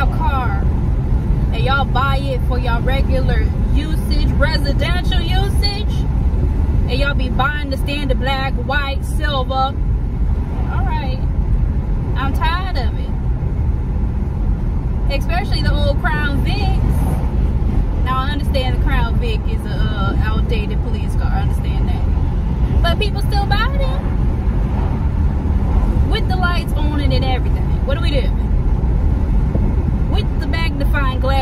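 A woman talking inside a moving car over the steady low rumble of road and wind noise in the cabin.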